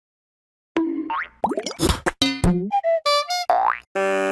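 Comic cartoon sound effects for an animated logo. After a silent start comes a quick run of springy boing-like sounds and rising whistle glides, then a few short stepping notes, and just before the end a held, buzzy chord begins.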